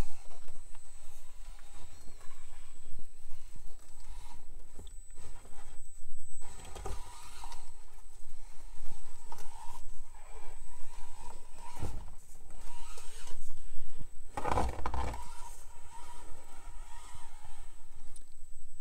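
Micro-scale RC rock crawler (Axial SCX24 Jeep Gladiator) crawling over a rock course: its small electric drivetrain is running while the tires scrape and grind on the rocks. A few sharper knocks come as it climbs and drops, the loudest about fifteen seconds in.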